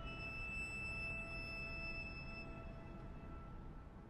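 A piano trio of violin, cello and piano holding soft, high sustained notes that slowly fade away.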